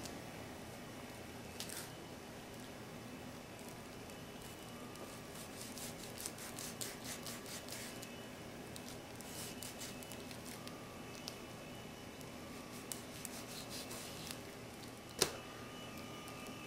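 Faint, wet cutting sounds of a kitchen knife slicing raw chicken thigh meat along the bone, with soft squishing and small scattered ticks. There is a sharper single tap near the end.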